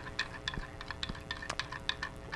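Spoon stirring liquid Jello briskly in a glass measuring cup, clicking against the glass about six or seven times a second.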